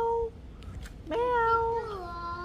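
A young child's drawn-out, wordless 'aah' vocalizing: one held note ending just after the start, then a second long note from about a second in that drops in pitch as it ends.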